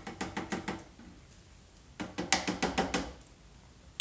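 Tin can of tomatoes tapped and scraped as it is emptied into a food processor bowl: a quick run of sharp clicks and knocks at the start, and another about two seconds in.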